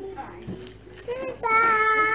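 A toddler's high voice singing out wordlessly: short vocal sounds, then one long held note from about halfway in.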